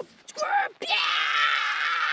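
A woman's short vocal burst, then a long, high-pitched scream held steady from about a second in.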